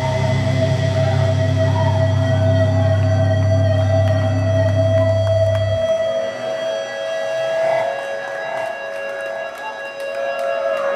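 Death metal band's amplified guitars and bass holding a final droning chord, with a steady feedback tone ringing over it. The low end cuts off suddenly about six seconds in, leaving the feedback ringing, and the crowd starts cheering and clapping near the end.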